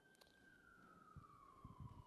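Near silence with one faint high tone sliding slowly down in pitch, and a few soft low thumps near the end.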